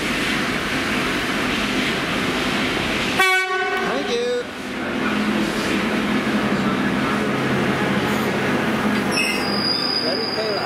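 Colas Rail track tamping machine approaching and passing, its diesel engine running steadily, with one short horn blast about three seconds in. A high steady squeal, typical of wheels on the rails, sets in near the end as the machine passes.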